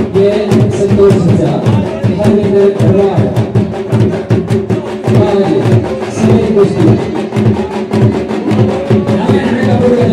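Drums beating a fast, steady rhythm, with a held, wavering melody over them: live folk music playing throughout.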